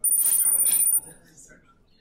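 Kahoot quiz game sound effect playing as the scoreboard appears: a short electronic chime about a second long, with two steady high ringing tones, cutting off sharply.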